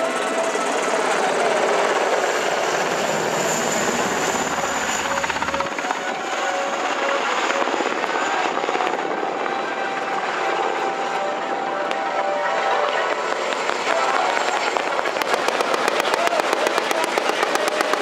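JGSDF UH-60JA Black Hawk helicopter flying overhead, its rotor and turbine noise steady. Rapid rotor-blade chop comes in strongly near the end as it passes close.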